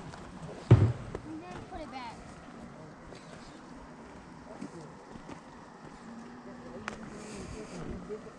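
Indistinct distant voices of people talking, not loud enough to make out words. A single loud, low thump comes under a second in.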